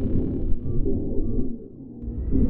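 Low, rumbling synthesized drone of an outro sound effect, with a few faint held tones, dying down briefly near the end.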